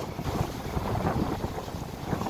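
Wind buffeting the microphone over water rushing along the hull of a small sailing day boat under way in choppy sea, as a steady, fluctuating rumble.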